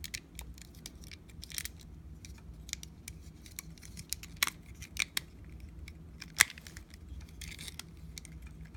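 Plastic action figure being handled and posed: scattered sharp clicks and taps of plastic parts and joints, the loudest about six seconds in, over a low steady hum.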